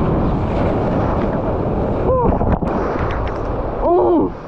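Heavy shorebreak surf washing up the sand, with wind buffeting the action-camera microphone: a loud, steady rush of noise.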